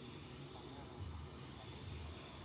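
Steady high-pitched drone of insects in the surrounding trees, holding an even pitch, over a faint low rumble.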